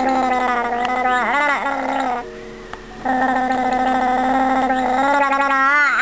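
A baby gurgling with milk in her throat: a long, fluttering, pitched vocal rattle that breaks off for about a second near the middle, then starts again and wobbles in pitch just before it stops.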